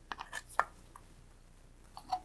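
A few light clicks and taps, close together in the first second, as the plastic indicator post and indicator dial are handled and fitted onto the top of a valve positioner.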